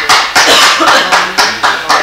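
Rhythmic hand clapping, about four to five claps a second, steady and loud.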